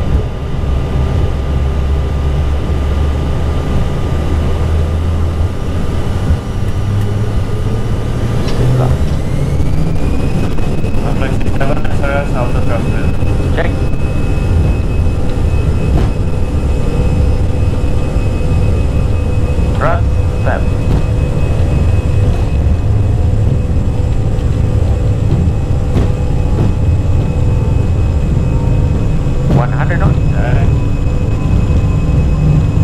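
Airbus A320 jet engines running up to takeoff thrust on the takeoff roll, heard from inside the cockpit: a loud, steady rumble, with a whine that rises in pitch about eight to ten seconds in and then holds steady.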